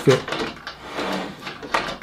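Cast metal jaw of a Makita rail clamp knocking and scraping against a thin aluminium curtain-track extrusion as it is pushed at the track's slot, which it is too big to enter. A sharp knock right at the start, then small clicks and scrapes, with a few more near the end.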